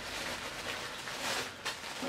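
Tissue paper rustling as hands dig through it, with a few louder crinkles along the way.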